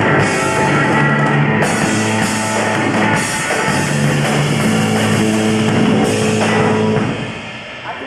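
Live power-pop rock trio playing: electric guitar, bass and drum kit with cymbals. The full band drops away about seven seconds in, leaving a quieter, thinner sound.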